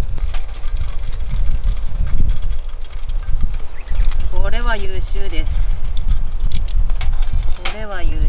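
Unsteady low rumble of wind buffeting the microphone, with light clicks of metal tongs against a small steel bowl in the second half. A voice speaks briefly about halfway through and again near the end.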